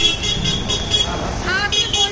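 Busy street traffic: motorbike and scooter engines rumbling past, with short horn toots now and then and people's voices in the crowd.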